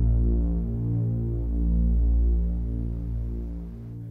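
Low, pulsing synthesizer drone of a film score, swelling and ebbing about once a second and fading away near the end.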